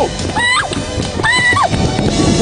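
A woman shrieking 'aak!' twice in short, high-pitched screams of fright and excitement as a tandem paraglider launch run takes her off the slope.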